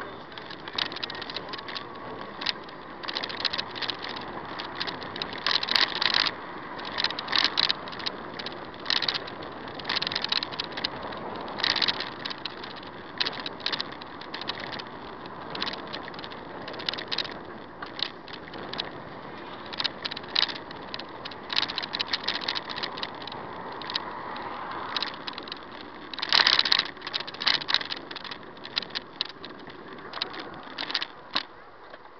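Steady road noise from a moving vehicle with irregular rattling and clatter all through, louder in clusters about six seconds in, around twelve seconds and again near the end.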